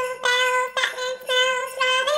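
A woman singing in a high voice: about four short notes on the same pitch, each held briefly.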